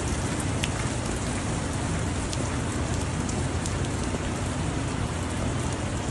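Heavy rain falling steadily on wet pavement: an even hiss with a few sharper drop ticks.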